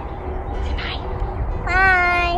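A young girl's high voice calling out one long, drawn-out note near the end, as a greeting while waving. Underneath, a steady low rumble of wind on the microphone.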